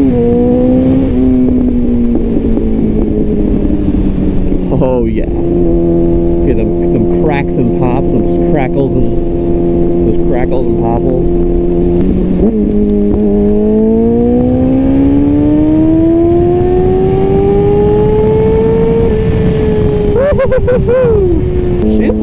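Yamaha YZF-R6's 600 cc inline-four engine pulling through the gears, its pitch dropping at each upshift, with several shifts in the first few seconds. It runs at a steady pitch, shifts again about halfway, then climbs slowly for several seconds before easing off near the end.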